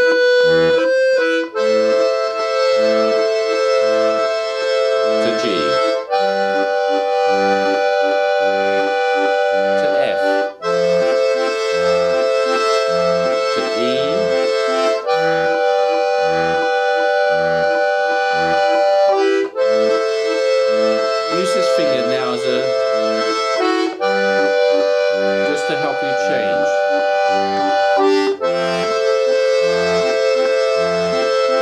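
Two-row diatonic button accordion (melodeon) playing a slow waltz tune: long held right-hand melody notes that change every four to five seconds, over a steady left-hand bass-and-chord pulse.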